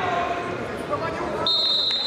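A referee's whistle gives one long, steady, shrill blast, starting sharply about one and a half seconds in, calling for the restart with one wrestler down in the par terre position. Voices call out in the hall before it.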